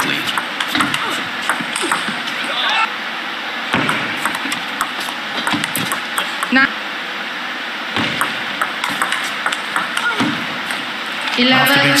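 Table tennis rally: a table tennis ball making sharp, irregular clicks as it is struck by the paddles and bounces on the table, over a steady background hum of the hall.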